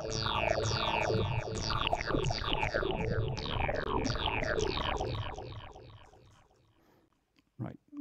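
Software synthesizer patch in Bespoke Synth played as a run of quick notes, about three a second, each sweeping down in tone. The notes fade out from about five seconds in.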